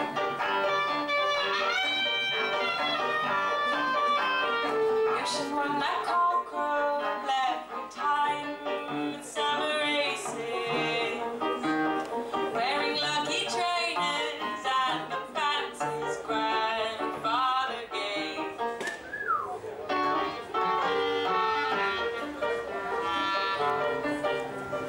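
Live band music: a clarinet plays a melody with sliding notes over cello and a Korg keyboard.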